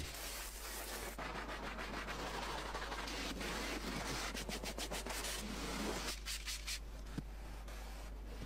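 A stiff detailing brush scrubbing foamy cleaner into car seat upholstery, in rapid back-and-forth strokes that grow fainter near the end.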